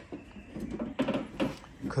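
Rustling and a few light knocks of plastic as a hand presses down on the corner of an aftermarket plastic wiper filler panel, which sits beside plastic drop sheets.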